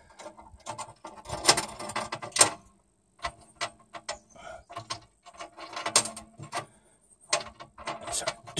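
Irregular small metal clicks and clinks of nuts and an aluminum strap bracket being handled at a battery terminal.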